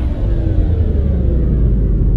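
Cinematic logo-animation sound effect: a loud, deep, steady rumble with faint tones sliding downward in pitch.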